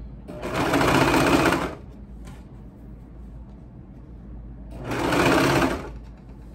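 Serger (overlock machine) stitching and trimming a fabric edge with its blade, in two runs of about a second and a half each, the first just after the start and the second near the end, with a pause between.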